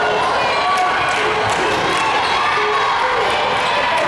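Basketball bouncing on a hardwood gym floor during a game, a series of short knocks, under talk from players and spectators in a large gym hall.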